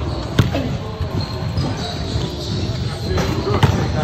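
A basketball bouncing on a hardwood gym floor, with a sharp hit about half a second in and another near the end, over a background of voices.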